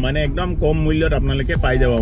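A man talking inside a moving car's cabin, with the car's low, steady running rumble beneath his voice.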